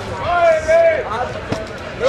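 A person's voice calling out in a drawn-out exclamation, followed by a single sharp knock about one and a half seconds in.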